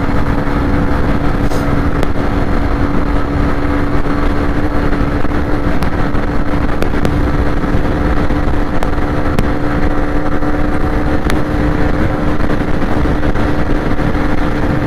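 Hero Xtreme 125R's single-cylinder 125 cc engine held flat out at top speed, a steady high engine note that neither rises nor falls, over heavy wind rumble on the helmet or bike-mounted microphone.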